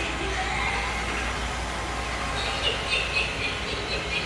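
Steady background din inside a large store: an even low hum and hiss, with a few faint high tones around the middle.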